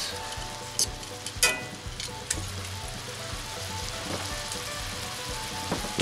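Bratwursts simmering in beer and onions in a cast iron skillet, with a steady sizzle as the liquid cooks down. A few sharp clicks of a fork against the pan fall in the first couple of seconds.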